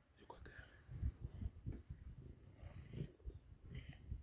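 Lioness growling at a male lion: a run of short, low, rough growls as she snarls at him.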